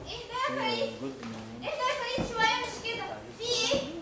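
Speech only: performers' voices talking on stage, with a brief low thump about halfway through.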